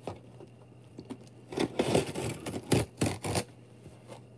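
Cardboard shipping box being torn open by hand: after a quiet start, a run of tearing and scraping strokes from about one and a half seconds in, lasting about two seconds.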